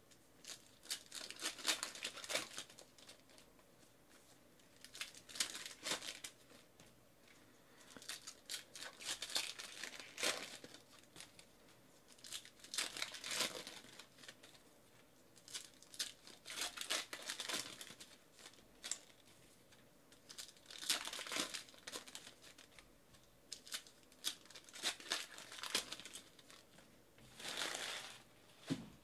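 Wrappers of 2018-19 Panini Revolution basketball card packs being torn open and crinkled by hand, one pack after another, in bursts about every four seconds.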